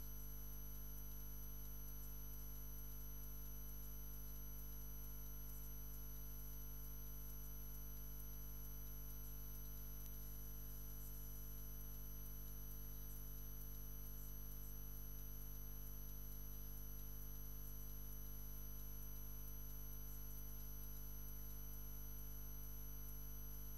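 A steady low hum with a thin high-pitched whine above it, unchanging and with no other sound over it.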